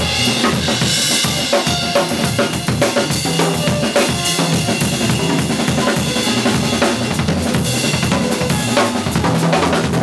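Drum kit played busily with sticks: a continuous wash of cymbals over quick snare and bass drum strokes.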